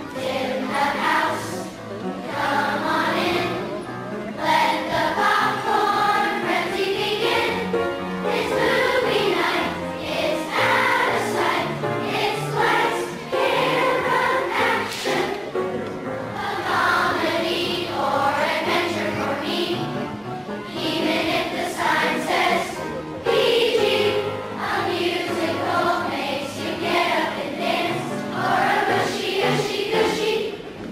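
A children's choir of fourth and fifth graders singing together over instrumental accompaniment.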